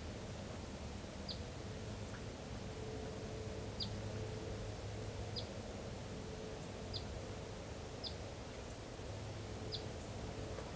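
A bird repeating a short, high call that falls in pitch, six times about one to two seconds apart, over a faint, steady woodland background hum.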